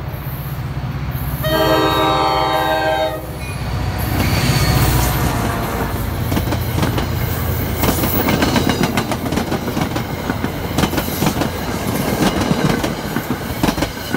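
NJ Transit diesel-hauled commuter train at a grade crossing: one long horn blast about two seconds in over the locomotive's low engine rumble. From about four seconds in the train passes close by, its coach wheels clattering over the rail joints and the crossing in a fast, steady run of clicks that lasts until near the end.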